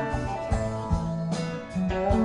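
Electric guitar played through a Louis Electric Captain Trips tube amplifier in a short instrumental passage between sung lines, over low bass notes and a steady beat of about two strokes a second.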